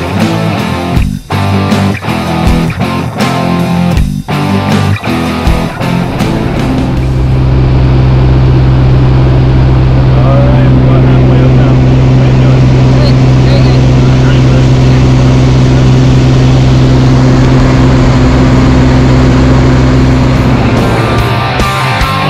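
Rock music with guitar for the first several seconds, then the steady drone of a light aircraft's propeller engine as heard inside its cabin during the climb, with faint voices. Music returns near the end.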